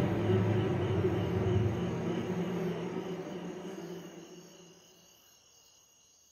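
A low, dark drone from the film's score fades away over about five seconds, leaving crickets chirping steadily.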